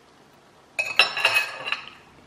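A metal fork clinking several times against a ceramic bowl, starting just under a second in, each strike ringing briefly.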